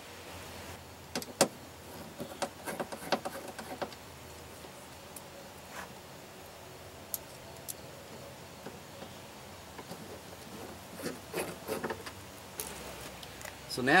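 Plastic speaker basket being handled and screwed back onto a car's inner door panel with a hand screwdriver: scattered clicks and taps in the first few seconds, a quiet stretch, then more clicks near the end.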